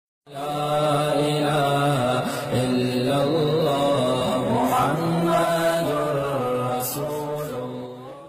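A man's voice chanting in long held notes that slide between pitches, fading near the end.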